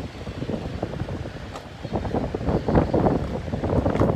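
Close handling noise: a plastic DVD case being turned over and gripped near the microphone, with irregular crackles and rustling that grow louder in the second half, over a low rumble of air on the microphone.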